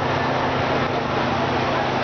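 Steady mechanical hum over an even background din, with no distinct events.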